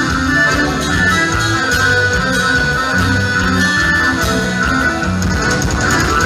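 A live gaúcho dance band playing loud and without a break, with accordion, guitar, bass and drums.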